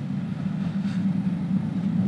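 Steady low rumble of a moving passenger train, heard from inside the compartment.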